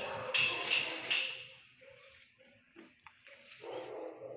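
Dogs barking in a shelter kennel block: a quick run of about four sharp barks in the first second or so, then quieter, scattered sounds.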